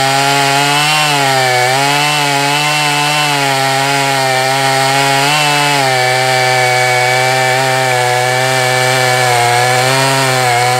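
Large Husqvarna two-stroke chainsaw held at full throttle while cutting through a big log, its engine pitch wavering slightly and sagging briefly a couple of times as the chain bites into the wood.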